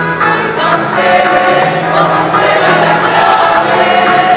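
A mixed amateur choir, mostly women's voices with a man among them, singing together with steady, held notes.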